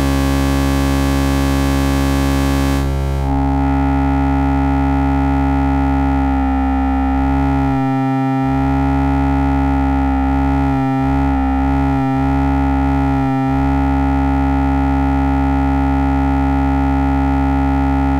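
Analog η Carinae Eurorack VCO, self-patched, droning one steady low note rich in harmonics. The tone changes as its knobs are turned. About three seconds in, the bright buzzy top falls away to a duller sound, and later the note briefly cuts out or stutters four times.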